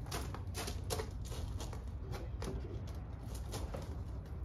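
Footsteps crunching on gravel, a string of uneven steps as a person walks a few paces and crouches, over a steady low rumble.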